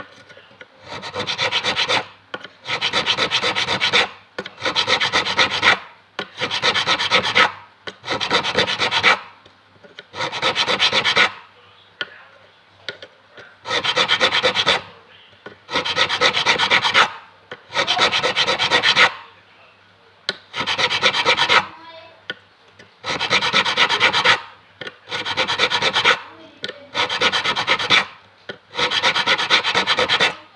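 A fret file rasping across a metal fret on an acoustic guitar neck, crowning the fret. It comes in repeated bursts of strokes, each a second or so long, about one every two seconds, with a longer pause near the middle.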